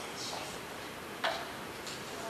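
A few faint, sharp clicks and ticks over steady room hiss, the sharpest about a second and a quarter in.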